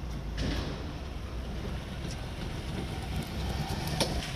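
A homemade six-wheeled coronavirus-shaped car running as it drives toward and past, a steady low rumble that grows gradually louder toward the end.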